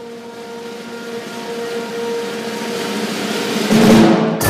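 Percussion roll, cymbal-like, swelling in a long, steady crescendo over a held chord, with a loud stroke just before the end, in a live classical performance.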